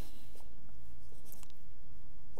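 Felt-tip marker pen scratching in short strokes on paper as digits are written, over a steady low hum.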